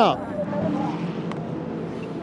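Hypercar prototype race car engines running at speed. The pitch drops steeply right at the start, then runs at a lower, steady pitch.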